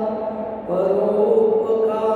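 A man's voice chanting a Sanskrit verse (shloka) in a sung recitation, holding long, steady notes with a short break just over half a second in.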